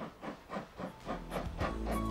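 Steam locomotive exhaust chuffing as it works up a steep gradient, the beats coming about two or three a second and growing louder.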